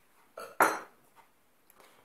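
A short clatter as a metal kitchen utensil is put down on the wooden table: two knocks about a quarter second apart, the second louder, with a brief ring after it.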